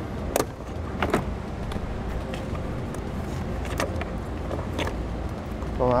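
A few sharp plastic clicks as push-in wiring harness clips are pried out of a truck door with a trim panel tool, the two loudest about half a second and a second in, over a steady low hum.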